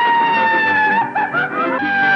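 A Mexican ranchera grito from an old film soundtrack: a man's long, high held cry that sinks slightly, wavers and breaks briefly, then holds again on a lower note.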